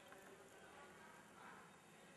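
Near silence: faint room tone with a light hiss.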